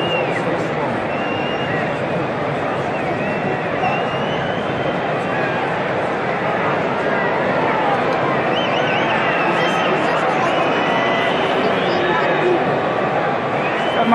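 Football stadium crowd: a steady din of many voices chattering and shouting at once, picked up from within the stands.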